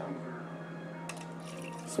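Kitchen handling sounds: a coffee carafe is lifted toward a metal shaker cup, with a single light clink about a second in, over a steady low hum.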